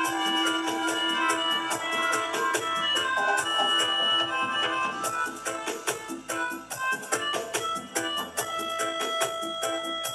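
Melodica playing a lead melody of held notes over a live dub reggae rhythm, with a steady drum beat.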